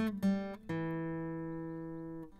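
Background music on acoustic guitar: a couple of quick plucked chords, then one chord struck about two-thirds of a second in and left ringing, slowly fading.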